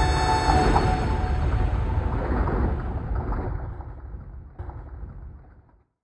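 The last sustained chime notes of an intro sting die away about half a second in, leaving a low, noisy wash that fades out steadily to silence just before the end.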